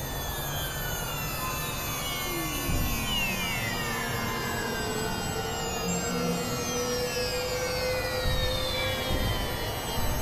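Experimental electronic synthesizer drone music. Many overlapping tones slide slowly downward in pitch while one tone rises gently, all over a dense, noisy low rumble, with no beat.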